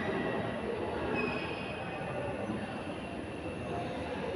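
Steady rumble of a train running on rails, with a faint high wheel squeal from about a second in.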